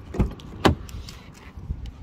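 A BMW 3 Series front door being opened by hand: two sharp clicks about half a second apart from the handle and latch, the second louder, then a smaller knock.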